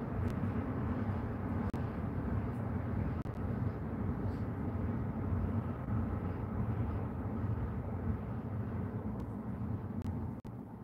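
A steady low rumble of background noise, with a few faint clicks over it.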